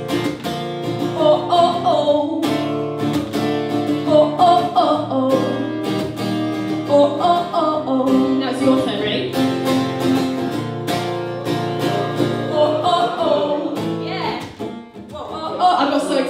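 Cutaway electro-acoustic guitar strummed steadily in a slow live song, with chords ringing, in an instrumental stretch between sung lines. It drops briefly in level near the end.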